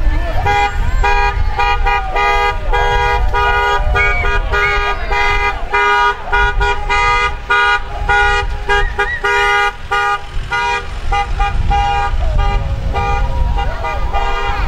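Vehicle horns honking in a long run of short, rapid, evenly repeated toots, about three or four a second, with people's shouts over them.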